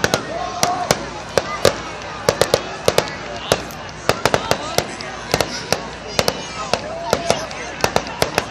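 Fireworks going off: an irregular run of sharp pops and cracks, often several a second.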